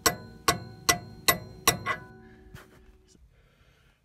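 Hammer striking a steel wrench fitted over a radius arm stud, driving a new radius arm bushing and washer onto the stud: five sharp, ringing metal blows about 0.4 s apart, with the ring of the last one dying away over about a second.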